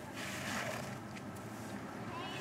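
Snow shovel scraping through packed snow, one soft brief scrape, over steady outdoor background noise.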